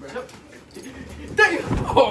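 Two people scuffling and falling onto a bed: a short high-pitched yelp about one and a half seconds in, then a heavy thud of bodies landing, with rustling of clothes and bedding.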